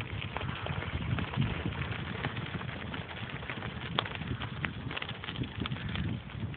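Bicycle rolling along a gravel track: a steady crunch of the tyres on loose stones with many small sharp clicks, over a low rumble of wind buffeting the microphone.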